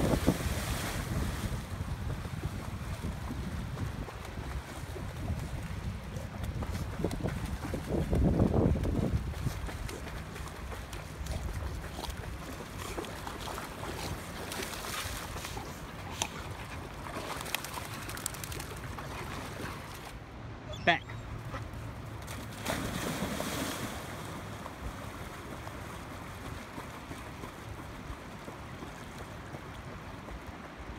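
Two Labrador retrievers crash into a river with a loud splash at the start. The rest is wind rumbling on the microphone over faint water sounds as they swim out, with a louder gust about eight seconds in.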